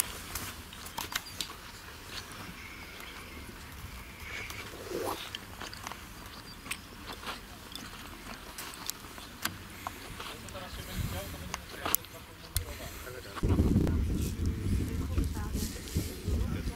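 Indistinct low voices and scattered small clicks and rustles from a group of scouts standing in ranks on grass. A louder low rumble comes in near the end.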